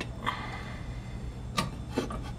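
Low steady hum of a workshop, with a few light clicks of metal parts as the press and the aluminium engine case are handled, twice near the end.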